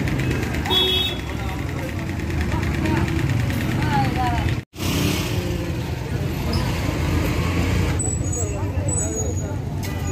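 Busy street ambience: vehicle engines running and people talking in the background. The sound drops out for an instant a little under halfway through.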